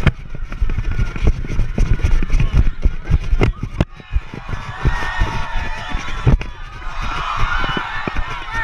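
Rumble and irregular thumps on the microphone of a body-worn GoPro as the player moves, with a few sharp knocks. Faint voices come in during the second half.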